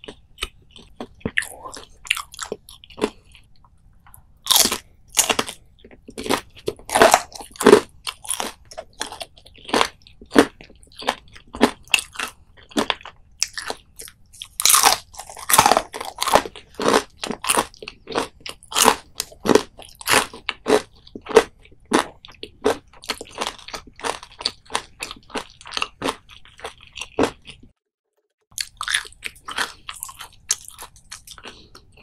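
Close-miked crunching of battered deep-fried anchovies being bitten and chewed: a dense run of crisp crackles, with the loudest bites about four seconds in and again about fifteen seconds in, breaking off briefly near the end.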